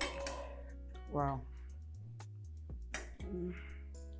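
Background film music with sustained notes, a short spoken word about a second in and another near the end, and light clinks of plates and cutlery.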